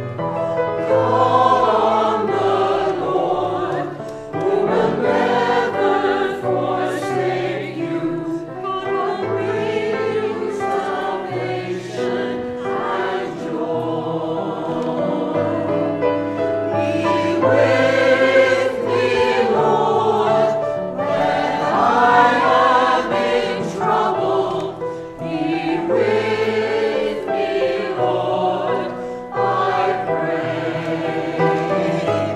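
Church choir singing a slow hymn in long held notes over a steady low accompaniment.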